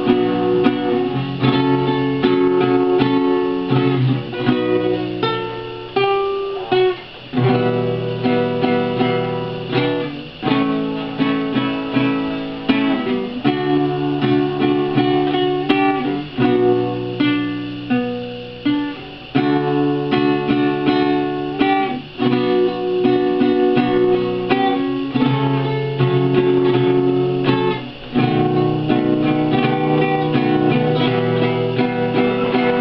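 Solo classical guitar played instrumentally, with chords strummed and picked in a steady rhythm. The chords change every couple of seconds, with brief dips between phrases.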